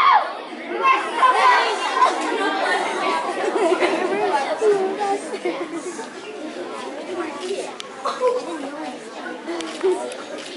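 Audience chatter: many voices talking at once, indistinct, dying down over the second half.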